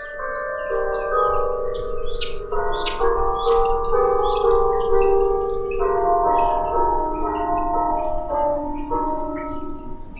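The Old Main clock tower's bells playing the university alma mater as a slow melody of sustained, ringing notes that overlap as each one fades, with birds chirping.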